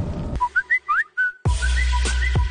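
Background music for a video transition: a short whistled tune of a few rising notes, then a beat with deep bass and drum hits comes in about one and a half seconds in, the whistled melody carrying on over it.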